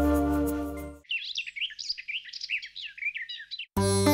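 Background music stops about a second in, and small birds then chirp rapidly and without a break for nearly three seconds. Music with flute starts again near the end.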